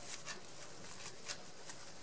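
Faint rustling of satin ribbon being pinched and folded between fingers, with a few soft light scrapes.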